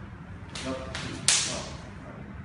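Hands and forearms smacking together in fast Wing Tsun sparring exchanges: three sharp slaps in quick succession, the last and loudest about a second and a quarter in, with a short echo from the hall.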